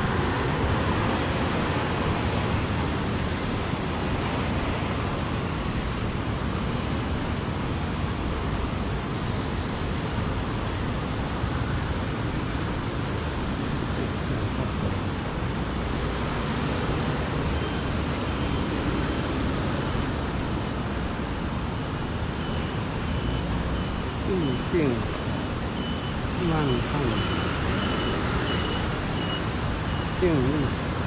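Steady road traffic at a busy city intersection, with cars, a bus and scooters passing. A faint high beeping repeats at an even pace through the second half.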